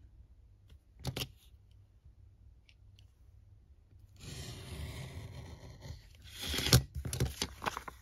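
A snap-off craft knife drawn along a metal ruler, slicing through envelope paper in one steady scraping stroke of about two seconds, trimming the envelope. It is followed by a louder burst of paper crackling and knocks as the paper is handled and the ruler moved.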